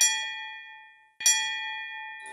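A metal bell struck twice, about a second and a quarter apart, each strike ringing clearly and slowly fading away.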